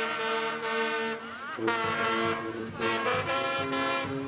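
Guggenmusik brass band playing loud held chords on trumpets, trombones, saxophones and sousaphones. A sliding glide in pitch comes about one and a half seconds in, and a deeper bass comes in under the horns just after it.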